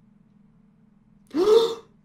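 A person gasps loudly once, a little over halfway through: a short, breathy, voiced gasp that rises and then falls in pitch.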